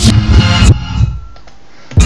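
Beat-driven music played off vinyl on DJ turntables, cut out suddenly about three-quarters of a second in, leaving only a faint fading tail before the music comes back in at the very end.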